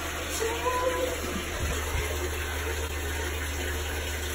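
Water running steadily from a tap into a bathtub.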